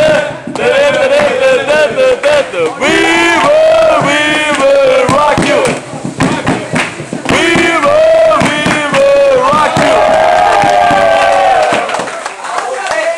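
A crowd of spectators chanting and hollering in long, rising and falling calls, cheering on a breakdancer, over frequent sharp percussive hits. Loud throughout.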